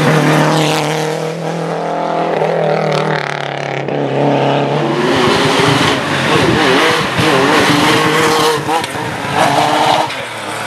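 Historic rally cars at full speed on a tarmac stage. A Lancia Delta passes at the start with a steady engine note that fades away. Then a Porsche 911's air-cooled flat-six comes into earshot, its revs rising and falling through the bend, and it passes close near the end.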